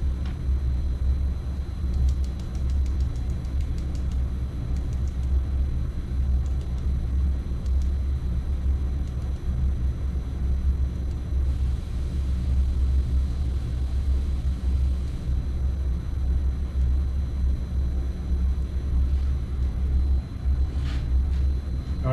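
Steady low rumble of machinery running in the background, with faint light ticks as gold mini flake is tapped out of a small jar into a mixing cup.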